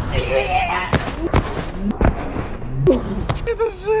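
Feet landing on an icy brick wall after a parkour jump, knocking and scuffing several times as they slip in a near fall, with a man's short exclamations.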